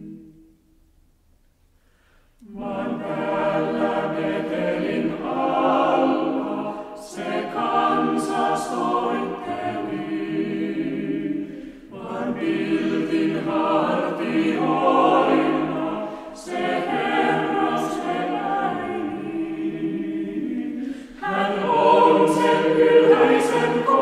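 Chamber choir singing a Finnish Christmas carol. It comes in after about two seconds of near silence and sings in phrases broken by short breaths.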